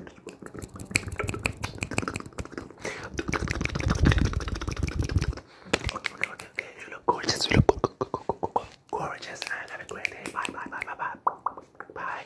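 Close-to-the-microphone ASMR whispering, mixed with rapid clicks and taps as a hand moves quickly right in front of the microphone, with a low rumble about three to five seconds in.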